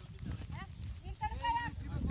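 People's voices calling out, rising to a high-pitched shout about three-quarters of the way through, over a low steady rumble of wind on the microphone.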